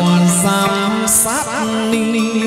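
Chầu văn ritual music: a held melody that wavers in pitch, with two bright cymbal crashes, one near the start and one about a second in.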